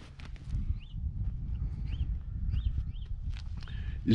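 Footsteps on dry desert ground over a steady low rumble, with a few short, faint high chirps scattered through.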